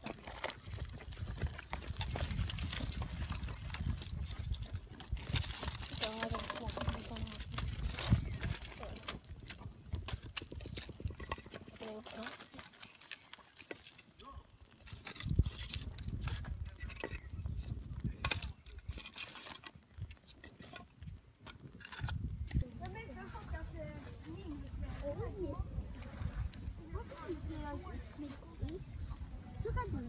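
Freshly lit wood fire of dry twigs and split kindling crackling as it catches, with many sharp snaps and pops, thickest in the first dozen seconds, over a low rumble.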